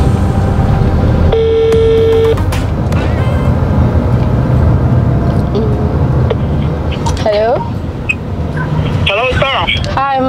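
Car cabin noise, a steady low rumble of the engine and road, with a phone on speaker: a single steady call tone about a second long near the start, then short bits of voice from about seven seconds in.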